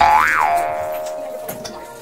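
A cartoon 'boing' sound effect: a sudden twangy tone that bends up and back down in pitch, then holds one note and fades away over about a second and a half.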